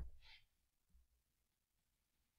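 Near silence, with a short, faint breath from the speaker just after the start.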